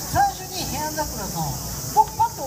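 A person's voice talking in short phrases, over a steady high hiss.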